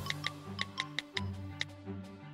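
Background music: held bass notes under a quick, light ticking beat.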